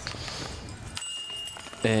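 A putted disc striking the metal chains of a disc golf basket: one sharp clink about a second in, followed by a brief thin ringing.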